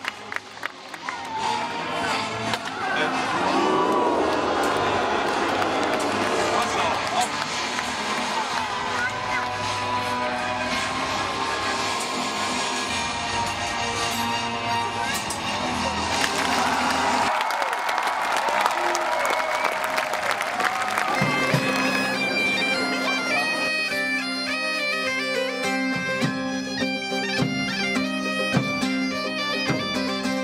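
Bagpipe music, a steady drone under a melody, mixed at first with a crowd of spectators cheering and talking. The bagpipes stand out clearly from about twenty seconds in.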